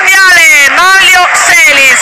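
An excited voice shouting in quick, high-pitched cries that rise and fall, over a goal celebration.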